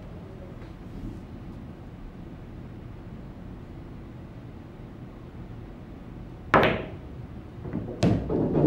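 Pool shot: one sharp click of cue and cue ball striking the object ball about six and a half seconds in, with a short ringing tail, over a steady low room hum.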